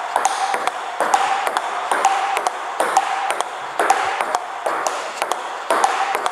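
Table tennis forehand counterhit rally: a celluloid-type ball alternately bouncing on the table and being struck by the rubber-faced bats, making a regular series of sharp pings, a few every second.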